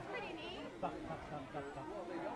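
Indistinct chatter of several people's voices, no clear words.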